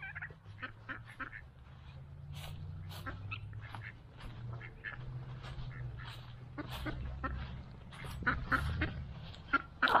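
A mixed flock of backyard poultry, ducks and guinea fowl among them, calling with many short, repeated calls over a steady low rumble.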